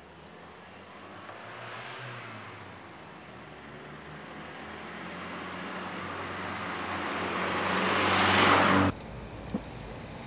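A Volkswagen Golf hatchback approaching. Its engine hum and tyre noise grow steadily louder, then cut off suddenly near the end.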